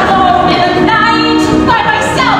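A woman singing a musical-theatre song, belting held notes over musical accompaniment.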